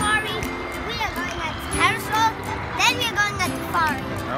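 A child's voice talking, with music playing underneath.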